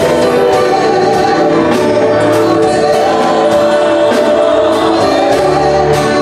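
Gospel worship song sung by a group of vocalists on microphones, over a steady beat of just under two beats a second.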